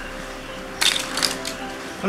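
Small plastic PVC pipe fittings clattering together as a handful is dropped onto newspaper on the ground, a brief burst of clicks about a second in, with faint background music underneath.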